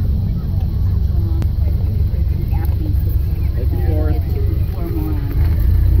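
Ford Model A's four-cylinder engine and running gear heard from inside the car as it drives slowly, a steady low rumble with faint voices in the middle.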